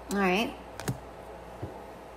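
A short wordless vocal sound from a woman, like a brief hum, followed by two sharp clicks close together and a faint soft tap.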